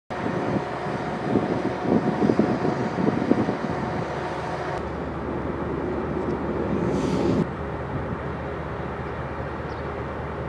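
Fenniarail Dr18 diesel locomotives running, a steady diesel engine drone with a few held tones, and some louder knocks in the first few seconds.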